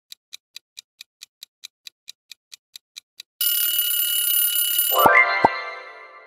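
Quiz countdown timer sound effect: rapid clock ticking, about five ticks a second, then an alarm-clock bell rings loudly for about a second and a half as time runs out. As it stops, a rising chime with two short pops sounds and fades out.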